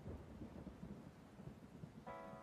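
Near silence: faint low room noise.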